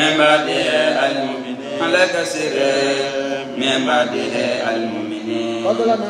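A man's voice chanting Arabic into a handheld microphone in several drawn-out melodic phrases with long held notes: Quranic recitation as read aloud in a tafsir lesson.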